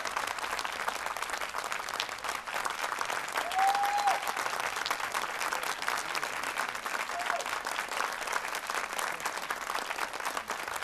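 Audience applauding steadily, with a short rising-and-falling cheer from the crowd about three and a half seconds in and a shorter one near seven seconds.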